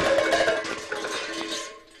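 Cartoon sound effect of tin cans clattering as they spill and settle after a collision, fading away over about two seconds, with light music underneath.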